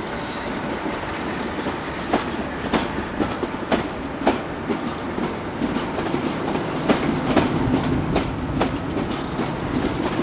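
InterCity passenger coaches rolling past along the platform, their wheels clicking over rail joints at irregular intervals of roughly half a second to a second over a steady rumble. A low steady hum comes in about seven seconds in.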